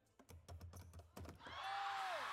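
Several quick clicks of a Pie Face game machine's crank handle being turned. About one and a half seconds in, the pie arm springs up and the audience cries out and starts applauding.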